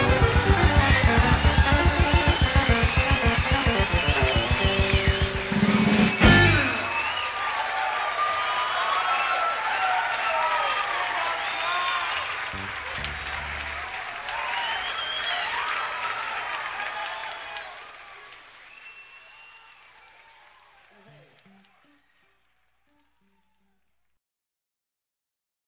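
Live blues band playing a fast boogie with a driving beat, ending on a final hit about six seconds in. The audience then applauds and cheers, and the applause fades out to silence shortly before the end.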